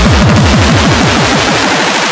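Uptempo hardcore electronic track: the pounding kick drums speed up into a fast roll, each stroke dropping in pitch, over a dense noisy synth layer, and the low end thins out near the end as the roll builds toward the next section.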